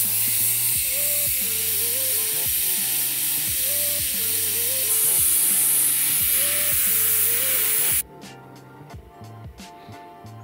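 Air hissing out of a Cooper Discoverer truck tire's valve stem as the tire is aired down for off-road driving; the loud, steady hiss stops suddenly about eight seconds in. Background music plays underneath.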